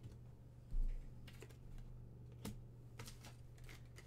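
Trading-card packs and cards being handled on a tabletop: a dull low thump just under a second in, then scattered light clicks and taps.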